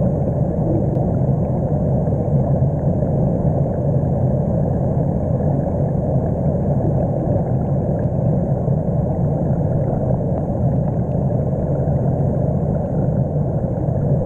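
A steady, dense low rumble with no distinct events, starting and stopping abruptly.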